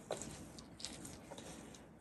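Quiet room tone with a few faint, brief clicks scattered through it.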